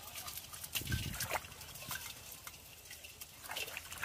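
Small splashes and drips with scattered light clicking taps as a woven bamboo fish trap is shaken out over an aluminium pot of water holding live shrimp and small fish. There is a brief low sound about a second in.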